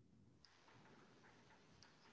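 Near silence with faint, irregular chalk taps and scratches from writing on a blackboard.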